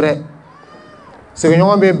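A man speaking into a microphone, who breaks off for about a second. In the pause a faint call rises and then falls in pitch, before the speech resumes.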